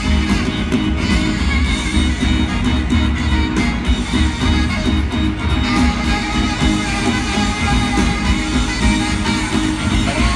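Live rock band playing an instrumental passage with drums, heavy bass, keyboards and electric guitar, with no singing.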